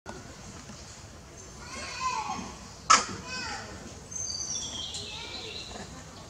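Long-tailed macaques calling: squealing cries that fall in pitch, a sharp knock about three seconds in, then higher thin calls near the end.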